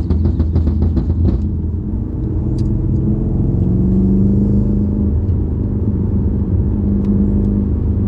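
BMW M5's V8 engine heard from inside the cabin, accelerating: its drone climbs in pitch and loudness over a couple of seconds, then holds steady. For the first second and a half a rapid, evenly spaced run of sharp ticks sounds over it.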